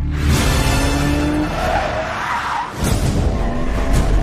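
Car chase sound effects: an engine revving with a rising note, then tyres skidding, over music.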